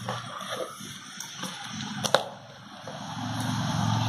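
A smartphone being lifted out of its cardboard box and handled: light rustling and scraping of the box, with a sharp click about two seconds in.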